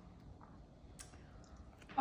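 Faint mouth clicks while chewing a bite of a slider sandwich, with one sharper click about halfway through.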